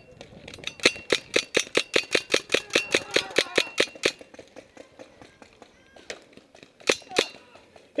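Paintball marker firing fast, about six shots a second, in a steady string for the first four seconds. The shots then thin out and grow fainter, with two more single shots near the end.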